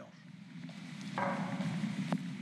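Workshop ambience: a steady low hum that grows slowly louder, with a higher hiss joining a little over a second in.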